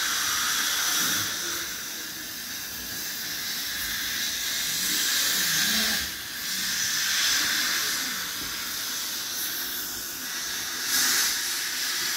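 A steady airy hiss that wavers in strength, dipping briefly about halfway through and swelling again near the end.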